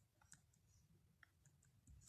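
Near silence, with a few faint, scattered ticks of a pencil writing on paper.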